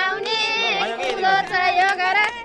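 Women singing together in high voices, with hands clapping along.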